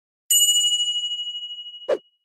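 A single bright notification-bell ding, struck once and ringing with a fading tone for about a second and a half. A short click comes near the end.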